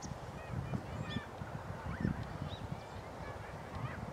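Birds calling: short, scattered chirps, several a second, over a steady low rumble.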